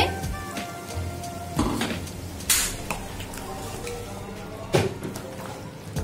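A steel ladle stirring curry in a metal cooking pot, scraping against the pot about three times, over soft background music.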